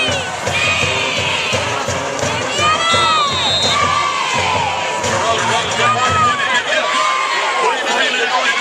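Football crowd in the stands cheering and shouting, many voices yelling at once. A brief steady high tone sounds about three seconds in.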